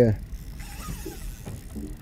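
A short spoken "yeah", then about a second and a half of steady low rumble with a faint hiss: background noise of a boat at sea.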